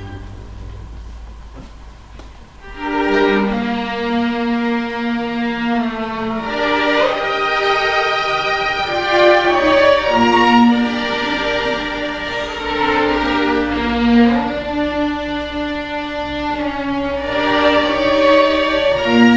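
A string orchestra of violins, cellos and double bass plays. It opens quietly, with the sound fading for the first two seconds or so. The full ensemble then comes in about two and a half seconds in, with held chords and a moving melody line.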